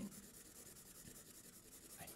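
Faint scratching of a Sharpie felt-tip marker scribbling back and forth on paper.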